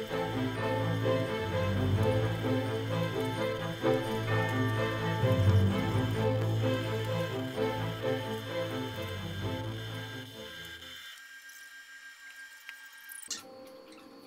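Background music with held notes, fading out about ten seconds in and leaving only faint room sound.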